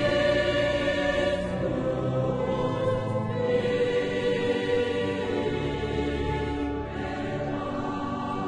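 Background choral music: a choir holding sustained chords that shift every two to three seconds.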